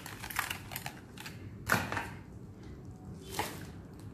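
Clear plastic packaging of a set of makeup brushes being handled and opened: a scatter of small clicks and crinkles, with a louder crackle a little under two seconds in and another near three and a half seconds.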